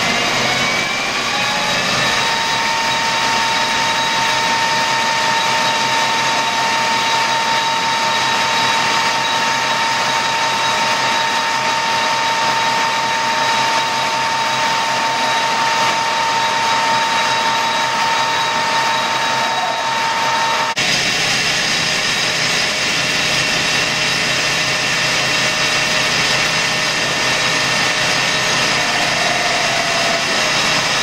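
Colchester lathe running under power while a ball-turning cutter cuts a copper bar: a steady machine whine with a high steady tone over it. Both change abruptly about two-thirds through, after which the running noise carries on without the tone.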